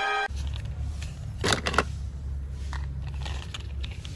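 Orchestral film music cuts off a moment in, giving way to a steady low rumble of handheld recording and a few sharp clicks and scrapes of small plastic toy cars being handled, the loudest about a second and a half in.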